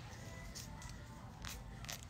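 Faint handling noises: a few brief clicks and rustles from a small object being worked in the hands, over a low steady hum.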